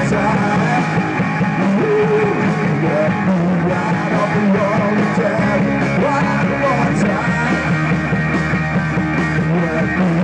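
Live rock band playing loudly and steadily: two electric guitars over a drum kit.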